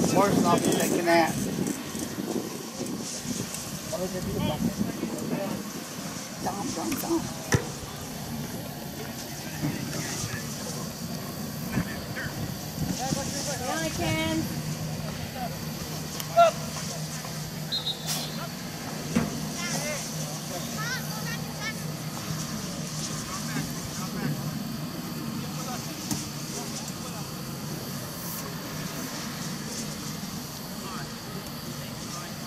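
Open-air soccer match sound: distant, unclear shouts from players and coaches across the field, with a few sharp knocks, the loudest about sixteen seconds in. A steady low hum sets in about halfway through.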